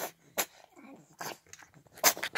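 A cat eating wet food from a metal bowl, snorting wetly through its nose in three short bursts between quieter eating sounds, as if its nose is snotty.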